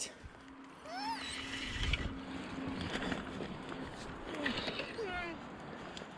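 River water running, with a dog giving short high whines that rise and fall, about a second in and again near the end.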